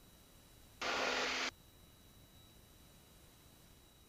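Near silence from a headset intercom feed, broken about a second in by a short burst, under a second long, of steady aircraft engine and cabin noise from a Piper Cherokee. The burst switches on and off abruptly, as when an intercom's voice-activated squelch briefly opens.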